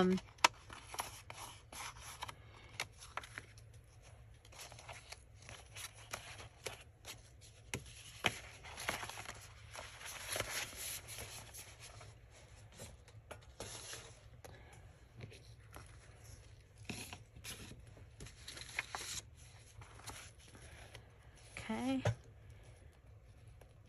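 Paper and card being handled on a cutting mat: scattered rustles, slides and light taps, with a busier stretch of paper rustling around the middle.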